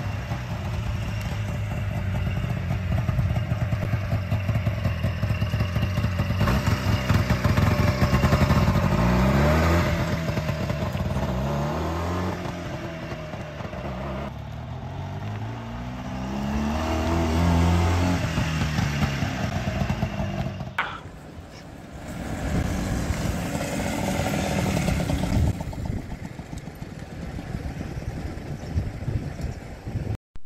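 Small engine of a Lamborghini Countach-style microcar running as it drives off, revving up and down several times with rising and falling pitch. A sharp click comes a little after the middle, followed by steadier running.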